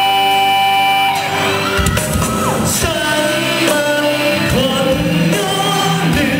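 A live band playing a pop ballad: a held chord for about a second, then the drums and the rest of the band come in near two seconds, and a male singer starts singing into the microphone.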